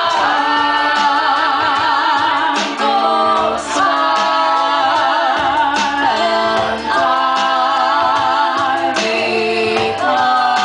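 Two women's voices singing long held notes in harmony with a wavering vibrato, over instrumental backing, in a live amplified performance. The notes come in phrases with short breaths between them.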